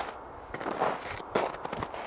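Footsteps crunching in snow, three steps at a steady walking pace.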